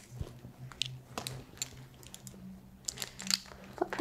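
Small clicks and crinkling from a blood pressure cuff and stethoscope being handled as a manual reading ends, with a quick cluster of crackles about three seconds in, over a faint low hum.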